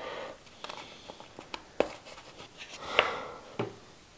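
Hands working candy dough into small plastic molds: scattered light taps and clicks, with a sharper click about two seconds in and a louder rustling tap about three seconds in.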